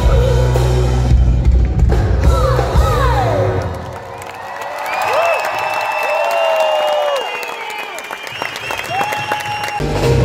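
Live band music with heavy bass and drums that stops about three and a half seconds in, followed by a concert audience cheering and whistling; the band's bass comes back in at the very end.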